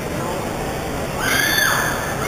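Crowd noise filling a gymnasium, with a loud high-pitched cry starting just past a second in that holds and then bends downward near the end.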